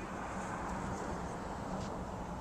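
Steady outdoor background noise: a low, even rumble with a faint low hum under it and no distinct event.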